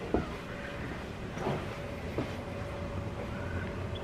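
Hotel room air conditioner running: a steady low hum with a faint, thin, steady whine, and a few soft knocks from the camera being handled.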